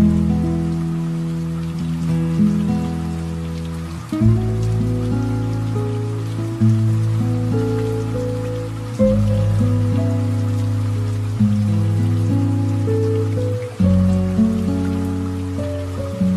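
Slow, soft relaxation piano music: deep chords struck about every four to five seconds and left to fade, with a gentle melody above, over a steady light rain-drop sound.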